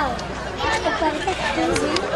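Chatter: several young men's voices talking and calling out over one another, with a short falling shout right at the start.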